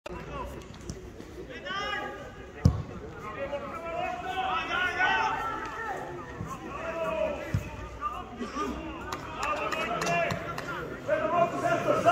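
Men's voices shouting across a football pitch, with sharp thuds of the ball being kicked, the loudest one about a quarter of the way in and another past the middle.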